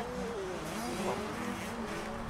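Dirt bike engines revving and easing off, several at once, their pitch rising and falling, with one quick rev about a second in.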